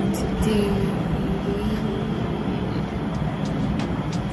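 Steady low rumbling noise, with a faint voice-like pitched sound in the first second or so.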